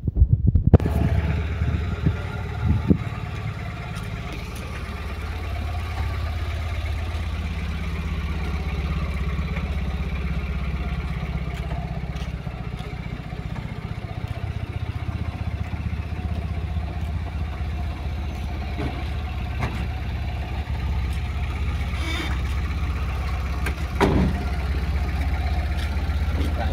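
Tata Ace Gold pickup's engine running at a steady idle, with a few short knocks near the start and another near the end.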